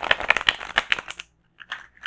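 A deck of large oracle cards being shuffled overhand between the hands: a quick run of card-edge clicks and slaps lasting about a second, then a second run starting near the end.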